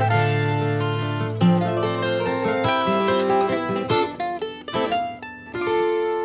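Instrumental music between sung lines: plucked acoustic strings playing a melody, over low sustained notes that drop out after about a second and a half.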